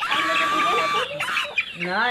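A chicken gives a loud, drawn-out squawk of about a second, followed by a shorter call.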